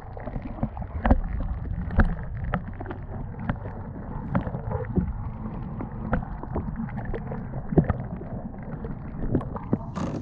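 Muffled water noise picked up by a camera held underwater beside a kayak hull, with irregular sharp clicks and knocks scattered throughout.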